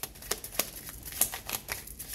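A deck of cards being shuffled by hand: a quick, irregular run of light card snaps and taps, several a second.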